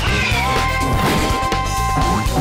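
Upbeat theme music of a TV show's animated intro, with a crash sound effect and a quick falling swoop at the start, then a high note held for over a second.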